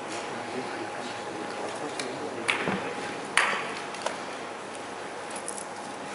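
A plastic draw ball being opened by hand to get at the paper slip inside, with two sharp clicks about a second apart midway, over a low murmur of voices in the hall.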